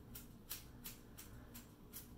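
Scissors snipping up into the wet ends of a ponytail, point-cutting to add texture: a faint, quick series of crisp snips, about three a second.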